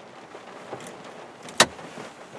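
Small knocks and clicks from inside a stationary car over a steady hiss, with one sharp click about one and a half seconds in.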